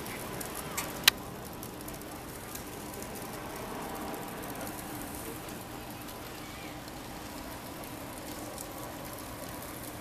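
Open-air stadium ambience: a steady background hum with faint distant voices, and one sharp click about a second in.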